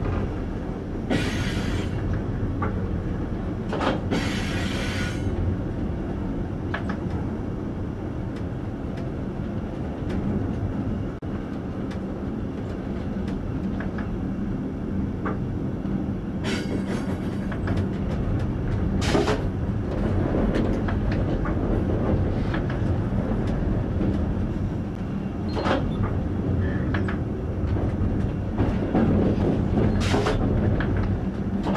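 Train running, heard from inside the driver's cab: a steady low rumble of wheels on rail, broken several times by short hissing bursts, the loudest about two-thirds of the way through.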